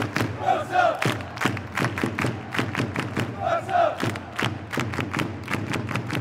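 Channel intro jingle: a steady beat of about three hits a second under crowd shouting and chanting. A short shouted vocal figure comes round twice, about three seconds apart.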